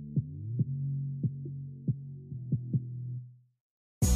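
Heavily muffled background music: held bass notes with a kick-drum beat, and nothing heard above the low end. It fades out about three seconds in.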